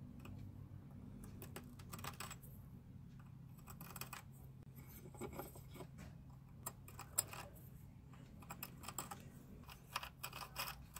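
A twist drill bit turned by hand in a small hole in a fine-silver spoon handle, giving faint, irregular scraping and clicking as it cuts the metal. A low steady hum lies underneath.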